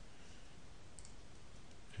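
Faint room hiss with one soft, short click about a second in, a computer mouse click as a file is opened.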